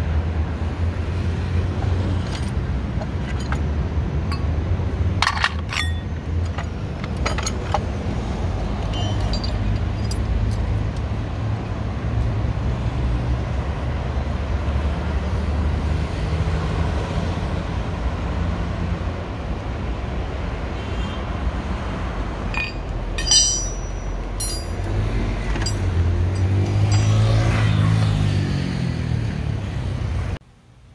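City street traffic: a steady low rumble of passing vehicles, with a few metallic clinks. Near the end a heavier vehicle goes by, its engine note swelling and then fading.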